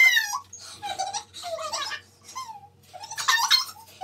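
High-pitched girl's voice squealing and giggling in short bursts, with no clear words; a sharp squeal right at the start and a louder burst about three seconds in.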